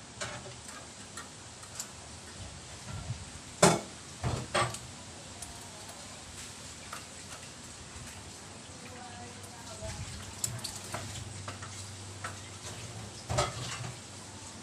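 Bicycle rear wheel being refitted into the frame by hand: scattered metal clicks and knocks from the chain, derailleur and wheel, with the loudest knocks about four seconds in and again near the end.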